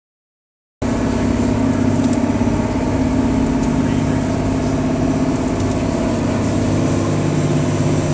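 Passenger ferry's engines running steadily while underway, a constant low drone heard from inside the cabin, starting suddenly about a second in.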